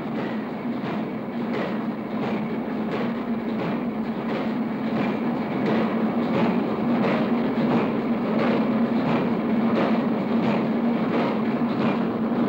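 Concrete mixing machines running: a steady mechanical drone with a rhythmic clatter about twice a second, growing slightly louder.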